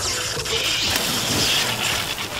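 A person plunging into a swimming pool: a splash followed by churning water, under background music.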